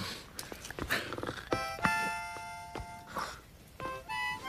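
A few sharp clicks and breathy noises, then a harmonica chord starts about a second and a half in and is held for over a second.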